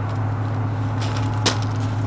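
Trailer tongue jack being cranked down by hand, with a single sharp click about one and a half seconds in, over a steady low hum.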